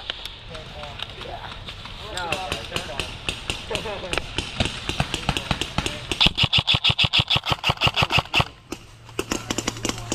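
Airsoft gun shots: scattered single cracks, then a rapid full-auto burst about six seconds in that lasts a little over two seconds and stops abruptly. Faint voices call out in the background early on.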